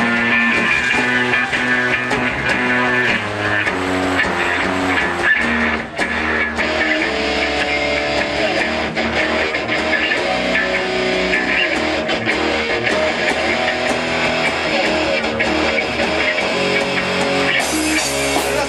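Live rock band playing: electric guitar over bass guitar and a drum kit, with a brief dip about six seconds in.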